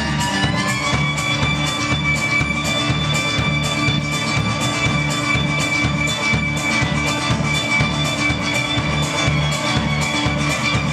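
Live acoustic string band playing an instrumental passage: upright bass, banjo and guitar over a steady beat of about three strokes a second. A held high note slides up in pitch within the first second and then holds.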